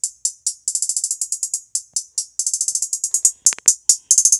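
Programmed trap hi-hat roll played back from the Caustic 3 drum sequencer: fast, high, crisp ticks in stuttering bursts that speed up into rapid rolls. A few heavier, fuller clicks come about three and a half seconds in.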